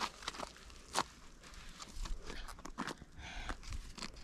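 Scattered scuffs and scrapes of shoes and hands on rough granite during scrambling, with one sharper tap about a second in.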